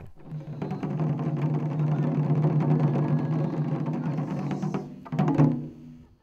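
Taiko drums played in a fast, dense roll that tapers off about five seconds in, with a brief loud burst just before it stops.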